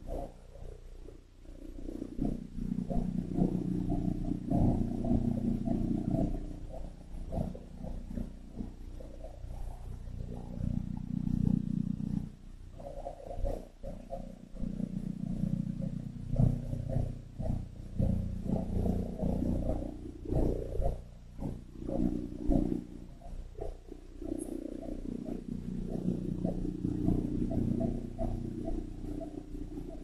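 A low, rough growling rumble that swells and fades in long waves, with short lulls between them.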